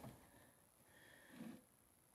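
Near silence: room tone, with one faint, short low sound about one and a half seconds in.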